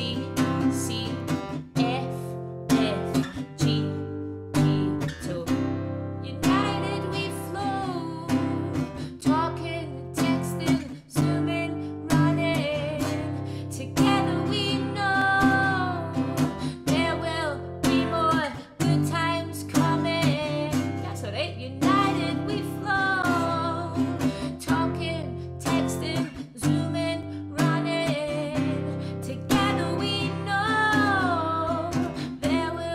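Acoustic guitar strummed through a chorus progression starting on C (C, C, F, G), with a woman singing a new chorus melody over it in phrases of held, bending notes.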